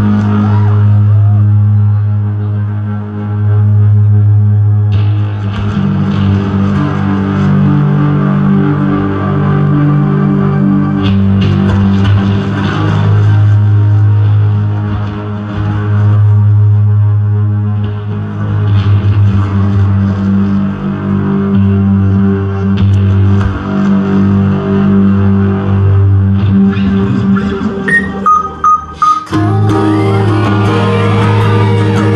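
Live amplified electronic-pop band playing an instrumental intro: a heavy, steady bass drone under sustained guitar and synth chords that shift every few seconds. About two seconds before the end the sound is chopped into rapid stutters.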